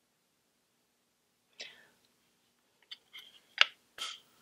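Quiet mouth sounds from a woman between sentences: a short breathy sound, then a few small lip and tongue clicks, the sharpest about three and a half seconds in.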